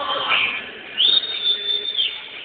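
A single high-pitched whistle, rising briefly and then held steady for about a second, starting about halfway through.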